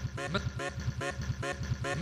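Quiet break in an electronic music track: a short vocal sample chopped into a fast, even stutter, about seven repeats a second.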